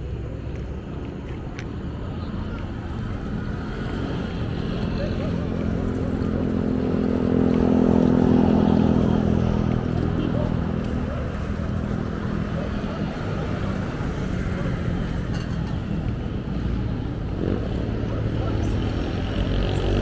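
Roadside traffic ambience with people's voices. A motor vehicle's engine passes close, growing louder to a peak about eight seconds in and then fading.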